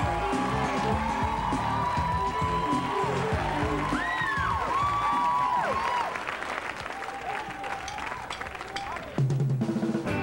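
Studio audience clapping, cheering and whooping over drum-heavy band music. About nine seconds in, loud electric guitars suddenly come in as the band starts the song.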